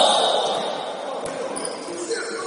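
Basketball bouncing on a sports hall's wooden floor among players' voices, with a loud call fading at the start and a single sharp knock of the ball about a second in.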